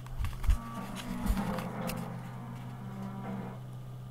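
Television sound from across a quiet room: an advertisement with music, heard faintly over a steady low hum. A few low bumps come in the first second and a half.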